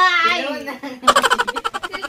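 People laughing: a woman's high laugh, then from about a second in a fast run of short ha-ha pulses.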